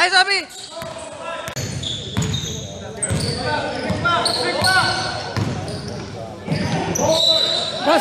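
Pickup basketball game in a reverberant gym: players calling out to each other, with a basketball bouncing on the hardwood floor.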